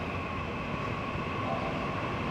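Steady background room noise: a low hum and hiss with two faint, level high-pitched tones running through it.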